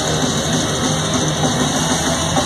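Live thrash metal band playing loud: distorted electric guitars over a fast, steady drum-kit beat, heard as a loud unbroken wall of sound through a phone microphone in the crowd.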